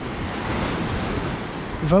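Ocean surf washing onto a sandy beach and breaking among boulders: a steady rushing of waves.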